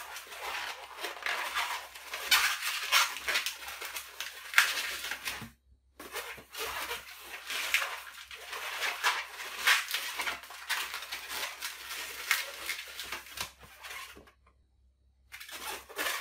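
Long latex twisting balloons being twisted and handled: irregular rubbery squeaks and scrunching as bubbles are twisted into locks. The sound breaks off twice, briefly.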